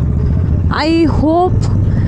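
Steady low rumble of a motorcycle ridden slowly at night, engine and wind noise picked up by a helmet-mounted camera; a brief voice breaks in about a second in.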